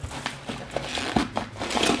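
Bubble wrap being pulled off a cardboard box: irregular plastic crinkling and rustling with small crackles.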